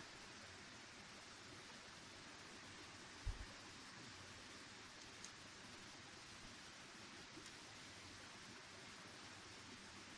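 Near silence: a faint steady hiss, broken once about three seconds in by a brief low thump.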